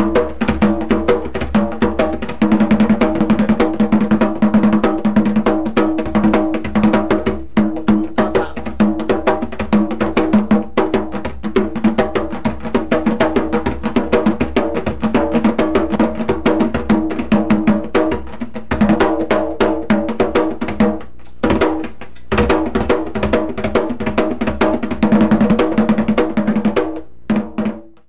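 Skin-headed hand drum played with bare hands in a fast, continuous stream of strokes, the head ringing with a low pitched tone: a bullerengue drum rhythm. It breaks off briefly twice about three quarters of the way through, then fades out at the end.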